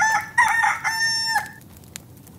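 A rooster crowing once: a short first note, then a longer held note, lasting about a second and a half in all.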